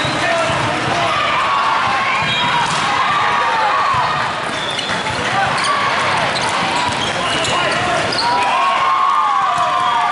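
Indoor volleyball rally in a big echoing hall: the hum of many voices, sneakers squeaking on the sport-court floor, and the ball being struck, with an attack at the net about halfway through.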